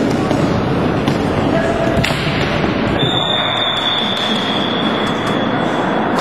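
Noise of a floorball game in play: voices and the general clatter of the game, with a few sharp knocks, and a steady high tone held for about the last three seconds.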